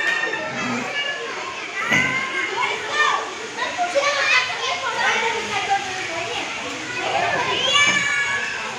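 Many children shouting and calling out over one another at play, their high voices overlapping without a break.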